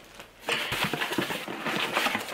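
Cardboard packaging of a wine glass being handled, rustling with quick taps and knocks, starting about half a second in.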